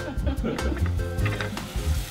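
Minced beef with diced carrot and onion sizzling in olive oil in a stainless steel pot, under background music.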